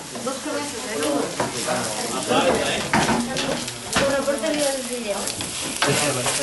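Chopped greens sizzling in a frying pan as they are stirred with a wooden spoon.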